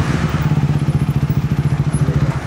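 Motocross bike engine running at a low idle with an even, fast pulsing beat as the bike rolls up and stops.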